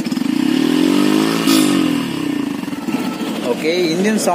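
Yamaha FZ-X's 149 cc single-cylinder engine given one throttle blip: its pitch climbs for about a second and a half, then falls back toward idle.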